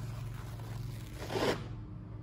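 A filler smoothing blade scraping across filler on a textured wall, one loud swipe about one and a half seconds in, over a steady low hum.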